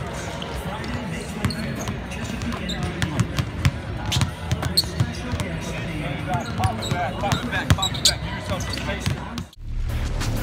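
Several basketballs bouncing on a hardwood court in a large, mostly empty arena, the thuds coming irregularly over background voices. The sound cuts out shortly before the end.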